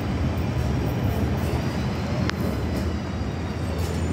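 Northern Class 331 electric multiple unit running alongside the platform: a steady low rumble throughout, with one brief high chirp a little past halfway.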